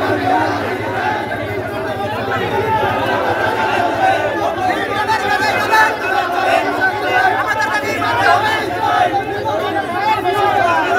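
A crowd of men shouting and talking over one another, a steady mass of overlapping voices with no single speaker standing out.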